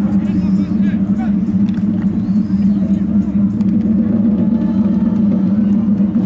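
Distant shouting voices of players and spectators over a steady low rumble.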